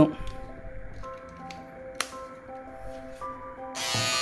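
Soft background music with a slow stepping melody, with a single click about halfway. Just before the end, the Philips All-in-One Trimmer 5000 series switches on and runs with a steady buzz.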